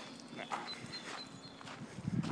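Faint footsteps of a person walking on a trail, with a few short high chirps near the middle.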